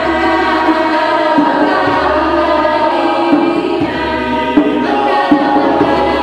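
Mixed a cappella choir singing sustained chords in several parts, with a few short low thumps scattered through.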